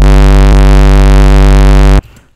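A low, sustained synth bass note from FL Studio's Harmor run through its Cube distortion model, harshly distorted and very loud at one steady pitch. It cuts off suddenly at the end.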